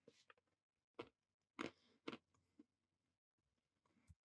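Near silence, broken by a few faint short noises, the clearest about one, one and a half and two seconds in.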